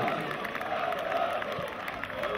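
Stadium football crowd cheering and applauding after a goal.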